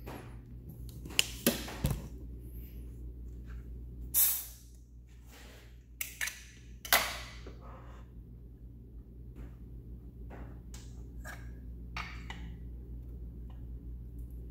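Hands and tools working a compression tester in an engine bay: scattered metal clicks and clinks, with a few short hissing sounds, over a steady low hum.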